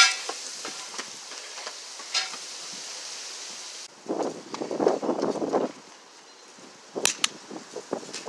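A person running outdoors with a handheld camera: footsteps and clothing rustling against the microphone, with a steady hiss at first. Near the end come two sharp cracks in quick succession.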